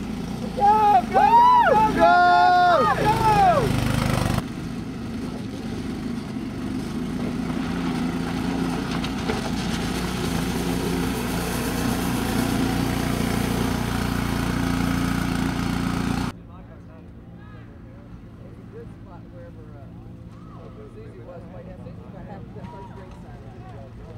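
Spectators yelling and cheering for the first few seconds, then a Baja SAE off-road buggy's single-cylinder Briggs & Stratton engine running steadily at high revs as the car drives past close by. About two-thirds of the way through it cuts to a much fainter engine with distant voices.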